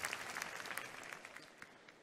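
Audience applauding, the clapping fading away and dying out near the end.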